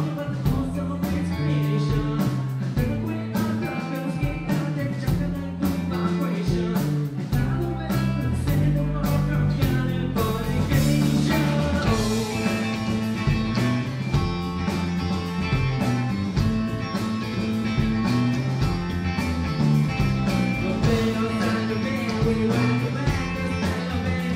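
Rock band playing live: distorted electric guitars and a singer's vocals over a steady beat.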